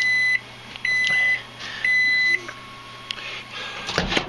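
An electronic beeper sounding three steady, high-pitched half-second beeps about a second apart, then falling silent. A single click follows shortly after.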